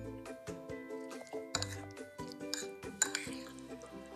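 A metal spoon clinking repeatedly against a ceramic bowl while stirring diced mango into mango coulis, over background music with sustained notes.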